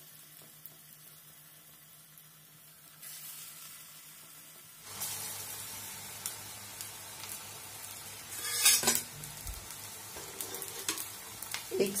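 Small lentil-batter pakoras deep-frying in hot oil in a kadhai, sizzling steadily. The sizzle grows louder about five seconds in, with a brief louder burst about nine seconds in.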